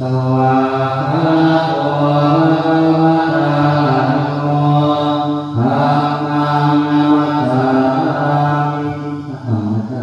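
A group of Thai Buddhist monks chanting in unison during the evening chanting service (tham wat yen). The chant goes in long, drawn-out held tones in two phrases, with a brief breath between them about halfway through.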